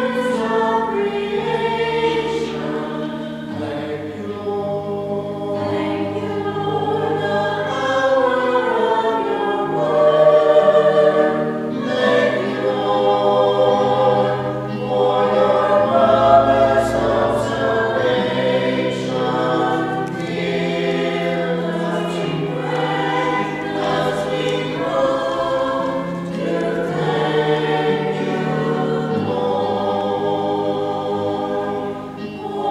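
A group of voices singing together in a church service, with long held notes moving in steps, continuous throughout.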